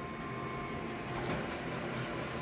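Office colour photocopier running a copy job, a steady mechanical hum with a thin, faint whine over it.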